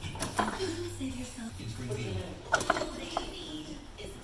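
A few sharp metallic clinks from hand tools and parts during work on the underside of a car's drivetrain, two close together about two and a half seconds in. Low, indistinct voices and a steady hum lie under them.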